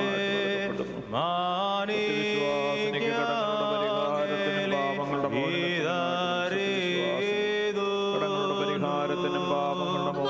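Orthodox liturgical chant: a voice sings a winding melody into a microphone over a steady low held drone, with a brief break for breath about a second in.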